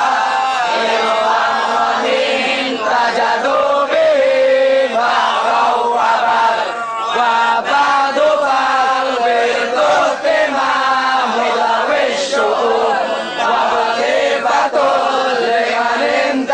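Group of men chanting Arabic devotional verses together, a maulid recitation in praise of the Prophet, their voices overlapping in a steady, melodic chant.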